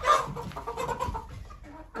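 A flock of backyard hens clucking in a string of short calls, the loudest right at the start, as they crowd around expecting treats.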